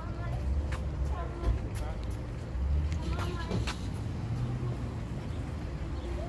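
Low, uneven wind rumble buffeting the microphone outdoors, with a few brief, indistinct voice sounds.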